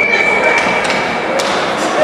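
Ice-rink game noise: spectator chatter over the rink's echo, with a steady high tone that cuts off about one and a half seconds in and a sharp crack of a hockey stick or puck at about the same moment.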